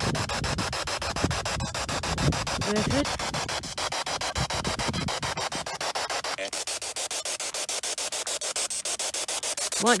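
Spirit box sweeping through radio frequencies: a steady hiss of static chopped by rapid, even clicks, with a few brief snatches of sound. A low rumble underneath drops away about six and a half seconds in.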